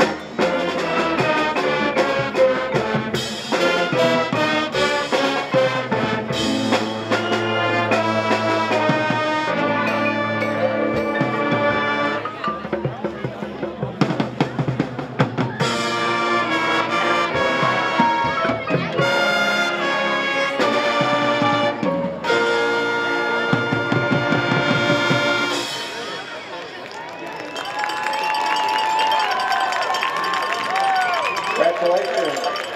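High school marching band playing loud brass chords and phrases over drums. The music ends about 25 seconds in, and a few seconds later a crowd starts cheering.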